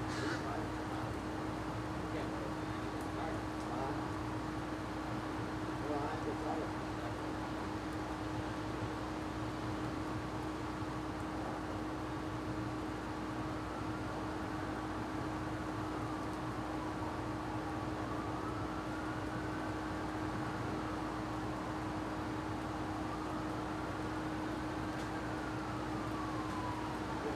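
Steady outdoor background noise with a constant low electrical-sounding hum. From about halfway through, a faint distant wail slowly rises and falls three times.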